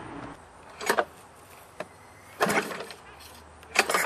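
Three short pulls on a push mower's recoil starter rope, a little over a second apart. The engine barely turns over and does not fire, because oil has filled the cylinder and hydro-locked it.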